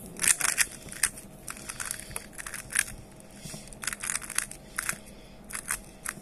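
Plastic hollow-lattice 3x3 puzzle cube being twisted by hand: an irregular run of quick plastic clicks and clacks in several clusters.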